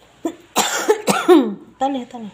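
An African grey parrot vocalizing: a short, noisy rasp about half a second in, then a few voice-like calls that slide down in pitch, and another brief call near the end.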